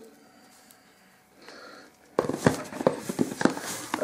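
Rustling and crinkling of packaging as items are handled inside an opened cardboard parcel box, starting about two seconds in as a dense run of crackles.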